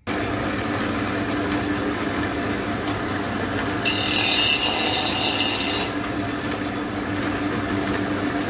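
Large abrasive disc sander running steadily. About four seconds in, a mango-wood mortar blank is pressed against the spinning disc for about two seconds, adding a high, shrill sanding sound over the motor's hum.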